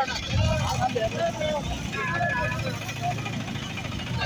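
Voices talking over a steady low rumble of road traffic and idling engines.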